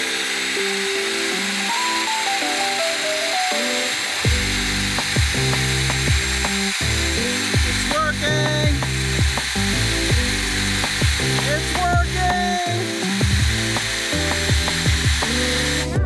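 Background music with a melody, and a bass line that comes in about four seconds in. Under it, the steady high whine of a DeWalt cordless drill spinning a rubber eraser wheel against a vinyl stripe to strip it off painted metal.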